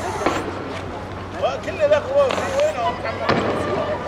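Two sharp bangs of riot-police fire, about three seconds apart, with men's voices shouting between them.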